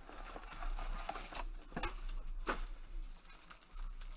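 Foil trading-card packs from a 2020 Panini Select football box rustling and crinkling as gloved hands pull them out of the cardboard box and lay them down, with several sharp crackles.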